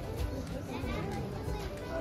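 Voices of a crowd of people chatting, including children's voices, with no single speaker standing out.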